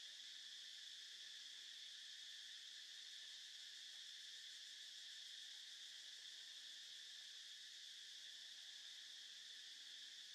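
Faint, steady insect chorus: a high-pitched drone that goes on without pauses or changes.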